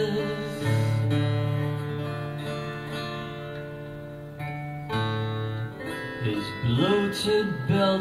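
Acoustic guitar playing sustained, ringing chords, changing chord about five seconds in; a man's singing voice comes in near the end.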